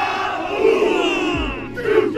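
A football team shouting together in a huddle, many men's voices in one long group yell that falls away, followed near the end by a few short shouted calls.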